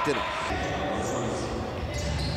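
Ambience of an indoor futsal hall during play: steady crowd noise with the sounds of the game on the court.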